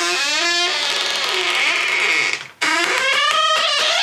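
A hotel room door's hinges creaking loudly as the door is swung open and shut: two long squealing creaks that waver in pitch, the second starting about two and a half seconds in.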